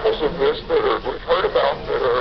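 Speech: a man giving a physics lecture, from a recording played back.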